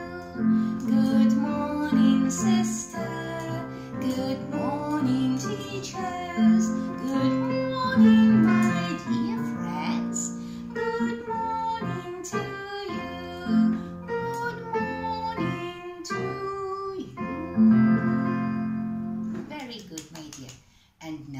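Digital piano playing a simple children's song with chords and melody, and a woman singing along at times.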